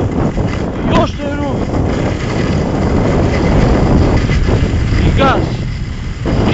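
Wind rushing over the microphone and skis scraping on hard-packed snow during a fast downhill ski run: a loud, steady rushing noise with brief vocal sounds about a second in and near the end.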